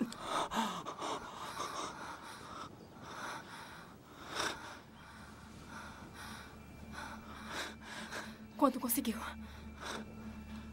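People panting and gasping for breath after running, ragged irregular breaths with a louder, voiced gasp near the end.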